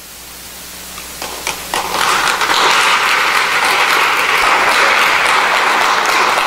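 Audience applauding: the clapping starts about a second in, builds over the next second, then holds steady.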